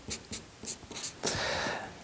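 Marker pen writing on paper: a few short strokes, then one longer stroke lasting about half a second near the end.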